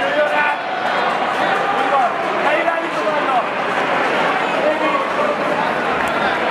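Crowd noise in a busy indoor hall: many voices talking and calling out at once in a steady din.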